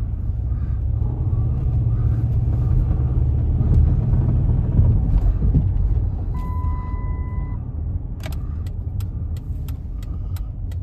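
A Chrysler Town & Country minivan's V6 engine and tyres rumbling from inside the cabin while driving, swelling to a peak mid-way and then easing off; the driver says the engine has a slight miss at low revs that clears above about 2,000 rpm and probably needs a tune-up. A steady electronic dashboard beep lasts about a second around the middle, and near the end the turn signal starts clicking, about two clicks a second.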